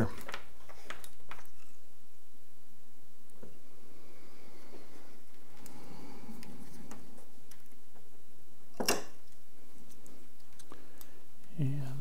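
Mostly quiet workbench with a few light handling clicks from small electronic parts and wires being positioned, and one sharper click about nine seconds in.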